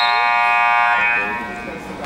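Gym scoreboard buzzer sounding one long steady tone that stops about a second in and trails away, signalling the end of a wrestling period.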